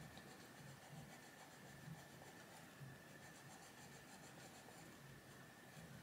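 Quiet scratching of a Faber-Castell Polychromos coloured pencil shading on paper.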